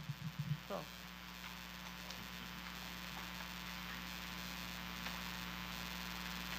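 Low steady electrical mains hum from the microphone and sound system, over faint room noise, with a brief faint voice sound under a second in.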